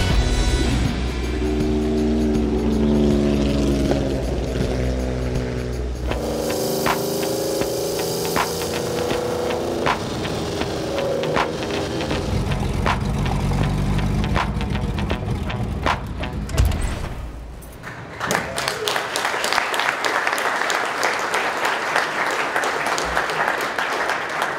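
Film soundtrack of music mixed with a Jaguar XKSS's straight-six engine revving up repeatedly, the engine note rising through each gear. About 18 seconds in it cuts out and gives way to the noise of a crowd in a hall.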